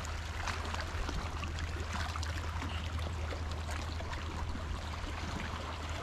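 Shallow sea water trickling and lapping among rocks, a steady wash of noise with scattered small ticks and a steady low rumble underneath.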